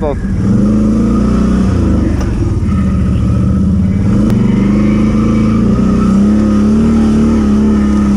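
ATV (quad) engine running at a low, fairly steady throttle while the quad is ridden along a dirt track, its pitch rising slightly a few times.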